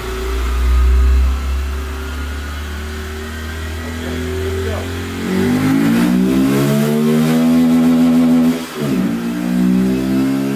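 Honda CBF125's single-cylinder engine run on a rolling-road dyno: a low rumble at first, then from about five seconds in the engine note rises steadily under throttle, drops off sharply just before nine seconds and climbs again.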